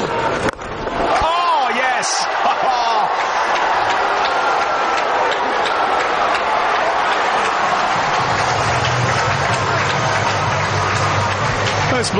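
Cricket bat striking the ball about half a second in, then a stadium crowd cheering and shouting, with loud whoops, as the ball is hit for six.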